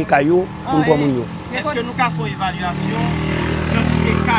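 People talking, with a motor vehicle engine running underneath as a low rumble that grows louder in the second half.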